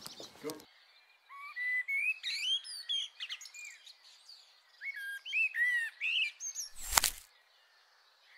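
Birds chirping: two runs of short whistled, gliding notes, then a single loud sudden hit about seven seconds in.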